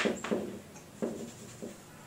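Chalk writing on a blackboard: a few short, faint scratching strokes.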